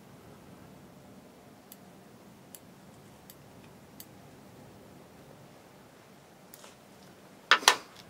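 Small fly-tying scissors snipping flashabou tinsel strands, four faint clicks under a second apart. Near the end comes a louder, sharp double knock.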